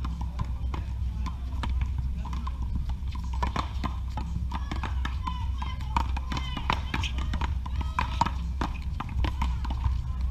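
One-wall paddleball rally: repeated sharp knocks of the ball striking paddles and bouncing off the concrete wall, irregularly spaced, with players' footsteps on the court.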